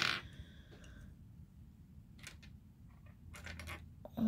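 Small plastic miniature toy kitchen pieces clicking faintly as they are picked up and handled, a light click about halfway through and a few more near the end.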